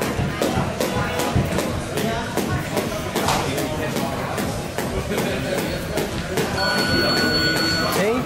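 Jump rope slapping the ring canvas in a quick, even rhythm with light footfalls as a boxer skips, over background music and voices. A steady high electronic beep sounds for the last second or so.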